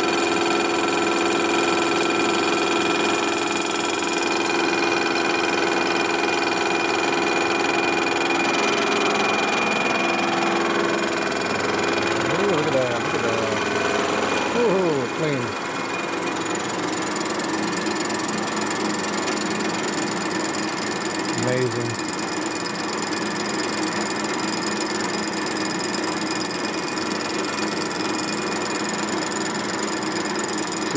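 Vertical milling machine running with its large face cutter taking a light cut across the ends of rectangular steel tubing. A steady machine hum carries several whining tones that fade about halfway through, leaving a more even running noise.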